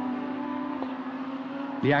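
GT3 race car engine running at high revs, holding a steady pitch.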